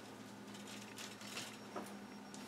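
Faint, scratchy strokes of a paintbrush dragging acrylic glaze across canvas, in irregular short swipes, over a low steady electrical hum.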